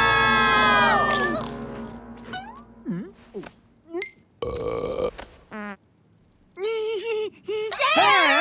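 A cartoon boar character's long burp about four and a half seconds in, after a falling chorus of shocked cries at the start; shocked cries start again near the end.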